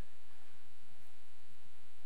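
A steady low electrical hum with a faint buzz above it, unchanging throughout.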